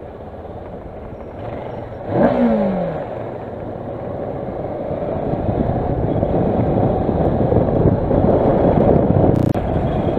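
Kawasaki Versys motorcycle engine revving up sharply about two seconds in, then dropping in pitch as it shifts up and pulls away. Engine, road and wind noise then build steadily louder, with a sudden break near the end.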